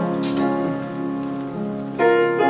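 Piano playing slow, held chords that fade a little before the next notes sound. A brief hiss cuts in about a quarter second in.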